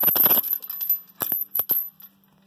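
Dropped phone clattering against the steel brake chain and brake parts: a quick run of sharp metallic clinks and rattles, then three or four more separate clinks about a second later.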